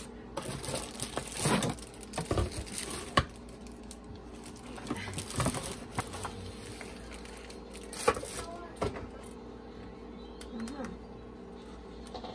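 Cardboard box and plastic packaging rustling and crinkling as a new hand blender is unpacked, with scattered irregular clicks and knocks of its parts being handled.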